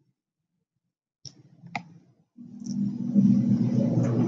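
Silence, then two computer mouse clicks about half a second apart, then a steady low background hum that fades in and holds.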